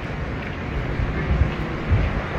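Small wheels of a rolling speaker case rumbling across a hard floor at a walking pace, with a couple of louder bumps in the second half.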